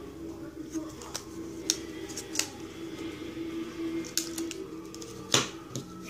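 Light clicks and taps of clear plastic coin holders and flips being handled, a scattering of them with the loudest near the end, over a steady faint hum.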